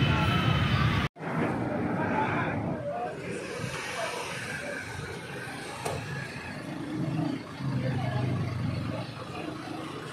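Street ambience of road traffic and scattered voices. A loud vehicle sound with a slowly gliding pitch cuts off abruptly about a second in, leaving quieter traffic noise and intermittent talk.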